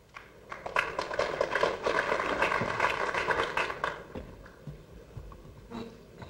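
Audience applause in a snooker hall: a crowd clapping that swells quickly, holds for about three seconds and dies away.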